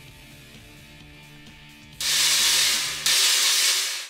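Cymbal stack of a Meinl 18-inch Classic Custom Trash China sitting on an 18-inch Byzance Vintage Pure Crash, struck twice about a second apart, each hit a loud, bright, noisy crash. Quiet background music plays before the first hit.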